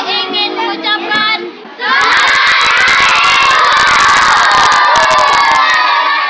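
A boy shouting close to the microphone, then a couple of seconds in a large crowd of schoolchildren breaks into loud, sustained cheering and shouting, with sharp clicks scattered through it.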